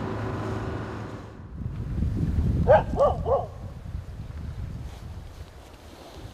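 A boat's motor drones steadily with the sea around it, then stops short. Wind rumbles on the microphone, and three quick, short animal calls sound one after another.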